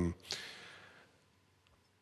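A man breathes in audibly close to a handheld microphone, a short airy inhale that fades away within about a second. Then near silence.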